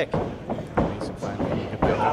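Voices of a small crowd and ringside chatter, with a few short thuds from the wrestling ring.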